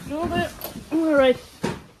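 Two short vocal calls from a person, in the voice of someone coaxing an animal, and a single sharp knock near the end.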